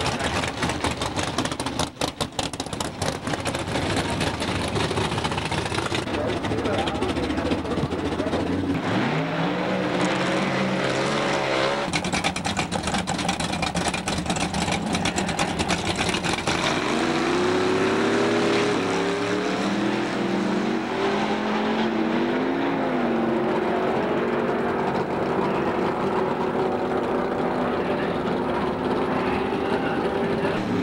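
Drag-racing cars running loudly, rough and crackling at first. About 9 seconds in, an engine note climbs and holds high, then climbs again at about 17 seconds: cars accelerating hard down the strip.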